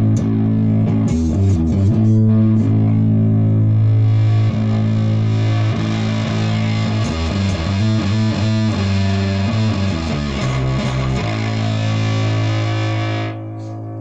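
Electric bass played through a bass fuzz pedal into a guitar amp: a run of distorted notes, each held and changing pitch every second or so, ending on one long sustained note near the end.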